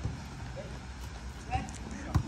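Soft thuds of a football being dribbled on artificial turf, over low outdoor background noise.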